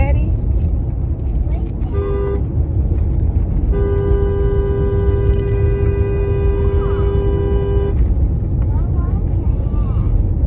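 Car horn sounding: a short toot about two seconds in, then a long held blast of about four seconds, heard over the steady rumble of road noise inside a moving car.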